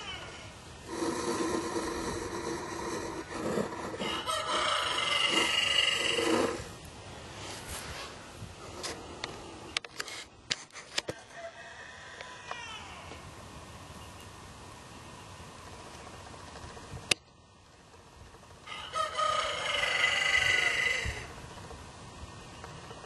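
Drawn-out pitched animal calls in two bouts: a long one from about a second in until about six seconds, and a shorter one near the end. A few faint sharp clicks fall in the quieter stretch between them.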